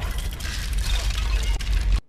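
Film sound effects of a volcanic eruption: a heavy, deep rumble under a dense hiss, cutting off abruptly at the end.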